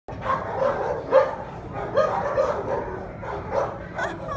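Small dog barking in a run of short, sharp barks, about two a second, the loudest about a second in.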